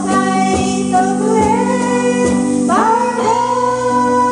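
A small live band: a woman singing a pop melody over two electric guitars, with a low percussion beat a little under once a second.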